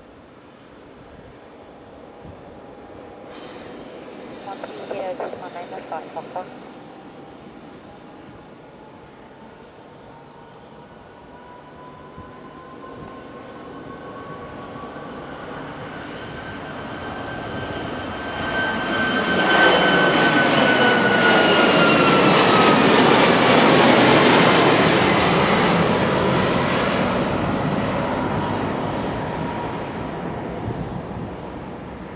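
Boeing 737-8 MAX's CFM LEAP-1B turbofans at takeoff power as the jet comes down the runway and climbs past. The noise grows steadily, is loudest about two-thirds of the way in, and a high whine drops in pitch as the aircraft goes by, then the sound fades as it climbs away.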